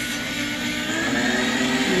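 Electric food slicer's motor running with a steady hum as its spinning blade cuts through a block of cheese; the pitch wavers slightly and drops near the end.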